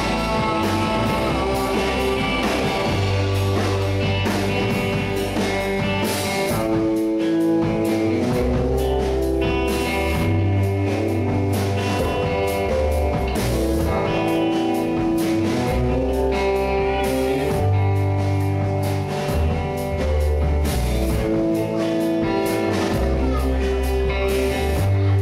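Live rock band playing: electric guitar over an electric bass holding long low notes, with a drum kit keeping time.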